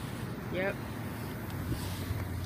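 Steady low background rumble of an outdoor parking lot, with one short spoken "yep" about half a second in.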